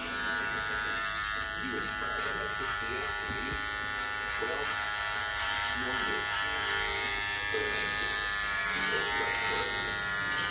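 Electric hair clippers running with a steady buzz as they cut hair close along the side of the head for a buzz cut.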